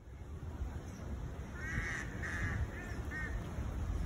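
A bird calls in a short series of about four notes, starting about one and a half seconds in, over a steady low rumble.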